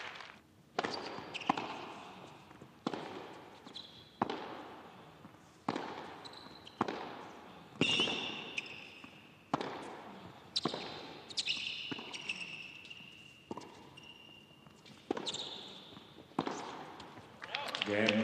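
Tennis rally on an indoor hard court, starting with a serve. Racket strikes and ball bounces come about every second and a half, each echoing in the hall. Brief high shoe squeaks sound on the court surface between strokes.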